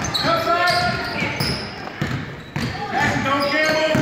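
A basketball dribbled on a hardwood gym floor, the bounces ringing in a large gym, amid players' and spectators' voices.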